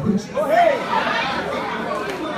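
Several voices calling out and talking over one another at once, a congregation and ministers answering the preacher during a pause in his address.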